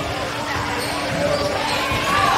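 Echoing gymnasium sound during a volleyball rally: voices of spectators and players over a steady faint hum, with knocks of the ball and of feet on the court floor.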